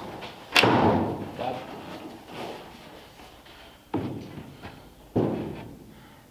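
Thumps and knocks as a person shifts about on a rough-cut plywood seat frame with foam pads inside a bare steel roadster body. The loudest and sharpest comes about half a second in, and two duller ones follow near four and five seconds.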